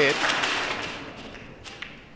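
Audience applause dying away, then two sharp clicks of snooker balls near the end as the cue ball reaches the pack.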